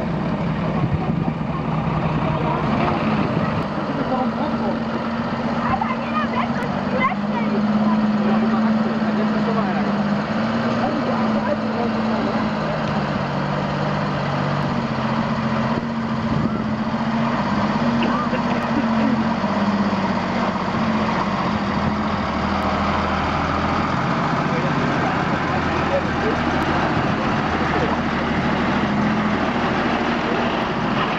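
Unimog truck's engine running steadily at low revs as the truck creeps through a muddy water crossing toward a stuck off-roader.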